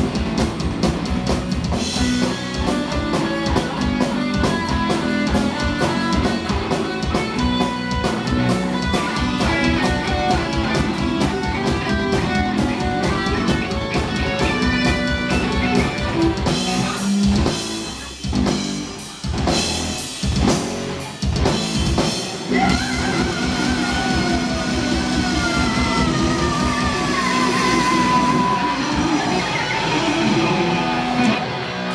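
Heavy metal band playing live: distorted electric guitars, bass guitar and fast drumming. About 17 seconds in, the band plays a stretch of stop-start hits, then a guitar lead line slides downward in pitch over sustained chords.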